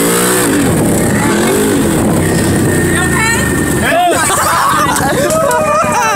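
An off-road vehicle's engine revving up and easing off twice as it drives, then voices shouting over it from about four seconds in.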